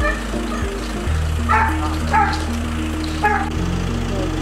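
A police dog barking three times, the barks coming less than a second and then about a second apart, over a steady low hum.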